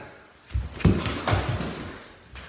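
A quick run of dull thuds and knocks, starting about half a second in, from people moving about on a rubber-matted floor.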